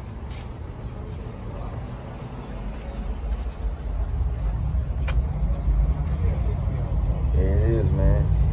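Low rumble of outdoor city noise, growing louder from about three seconds in. A short click comes about five seconds in, and a voice is briefly heard near the end.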